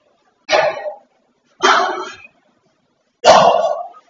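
A dog barking three times, loud and about a second apart.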